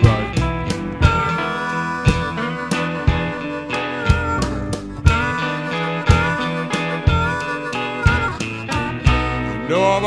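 Chicago blues band playing an instrumental break: a long, bending lead line held over guitar, bass and drums, with the drums keeping a steady beat about once a second.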